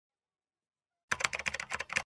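Silence, then about halfway in a quick, irregular run of about a dozen computer-keyboard typing clicks lasting under a second.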